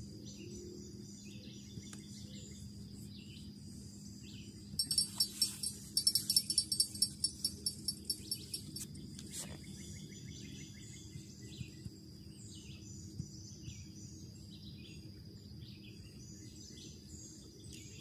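Riverbank ambience: small birds chirping over a steady high insect drone and a low hum. From about five to nine seconds a run of sharp high-pitched ticks, roughly five a second, is the loudest sound.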